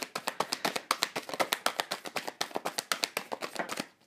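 A deck of cards being shuffled by hand: a fast, even run of light card taps and slaps, about ten a second, that stops just before the end.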